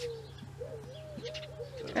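A bird cooing faintly, a few low, arched calls in the second half.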